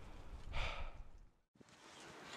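A person breathing heavily, with one breath about half a second in, over a low wind rumble on the microphone. The sound cuts out about one and a half seconds in.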